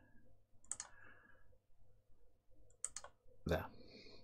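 Two short, sharp computer mouse clicks about two seconds apart, over faint room tone.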